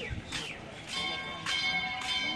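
A metal bell struck about a second in and again half a second later, its tones ringing on after each strike, over background voices.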